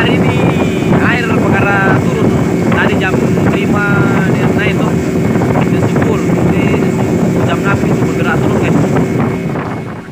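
A small fishing boat's engine running steadily at speed, with wind and water rushing past. Voices call out over it in the first half. The sound fades out near the end.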